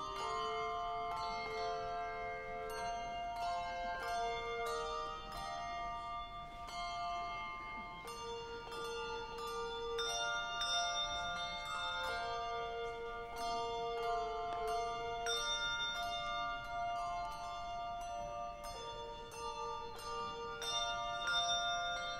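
A handbell choir playing a slow melody. Each struck bell rings on and overlaps the next notes.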